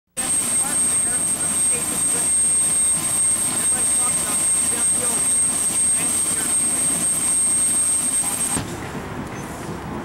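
Loud, steady outdoor crowd noise: many voices chattering over a dense hiss, with a steady high-pitched whine throughout. It cuts off suddenly about eight and a half seconds in, leaving quieter background sound.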